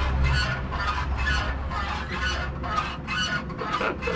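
Honda C90's rear suspension squeaking in a steady rhythm, about twice a second, as the rider bounces on it, a creaky squeal that sounds like a donkey braying.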